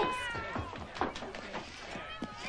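A cat meowing: one drawn-out meow that falls slightly in pitch over the first second, with a few short knocks.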